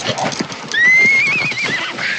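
A horse whinnies: one high call about a second long that rises and then wavers, coming right after a few quick hoof thuds.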